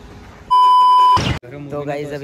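A loud, steady electronic beep on one pitch, lasting under a second, ends in a brief whoosh. It is an edited-in sound effect laid over a cut between scenes.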